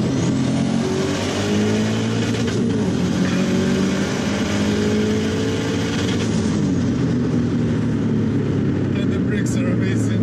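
Turbocharged flat-four engine of a 2002 Subaru WRX STi wagon under hard acceleration, heard from inside the cabin. The engine pitch climbs, drops at a gear change about two and a half seconds in, then climbs again until about six and a half seconds before the driver eases off to a steady cruise. A short laugh comes near the end.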